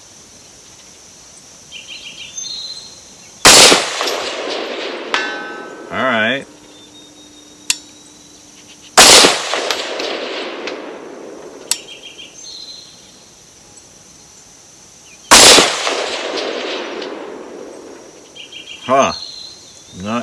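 Three rifle shots from a Bear Creek Arsenal AR-15 in 6.5 Grendel, about six seconds apart, each followed by a long echo that fades over a couple of seconds. A steady high chirring of crickets runs underneath.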